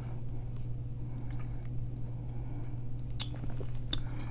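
Quiet mouth sounds of sipping a thick milkshake through a straw and swallowing, with two small clicks near the end, over a steady low hum.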